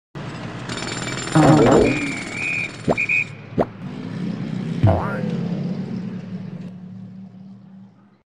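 Sound effects for an animated news-logo intro: a whoosh, two sharp clicks with a brief high tone, and a second whoosh, over a low steady drone that fades out near the end.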